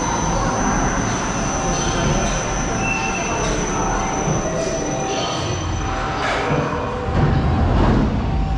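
Intamin straddle roller coaster train rolling into the station on its steel track and coming to a stop, a steady rolling rumble with some high squeaks along the way.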